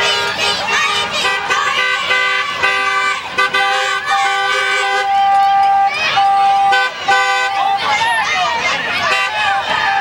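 Vehicle horns honking over and over in long and short blasts, several overlapping, with people cheering and shouting.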